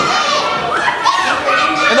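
Children in the crowd shouting and yelling with high-pitched voices.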